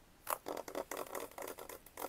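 Cardboard box of a glass digital bathroom scale being picked up and handled close to the microphone: a quick run of scrapes, rubs and light knocks starting about a quarter second in.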